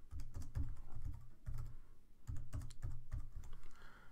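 Computer keyboard typing: an uneven run of keystrokes, several a second, broken by a couple of short pauses.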